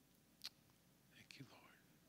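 Near silence: a single soft click about half a second in, then a faint whispered voice for a moment just after a second in.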